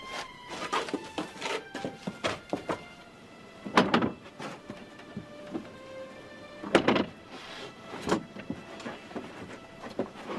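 Dramatic film score music over a series of heavy crashes and thuds. The two loudest come about four and seven seconds in.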